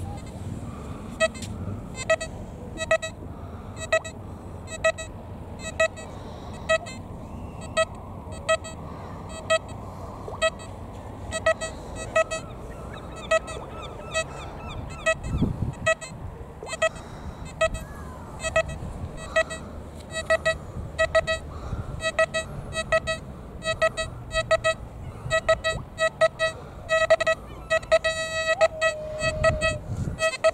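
XP Deus metal detector giving short, mid-pitched target beeps as its coil is swept over a target, about one a second at first and then quicker, ending in a longer held tone near the end.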